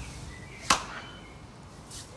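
One sharp, short hand clap about two-thirds of a second in, then only a faint background.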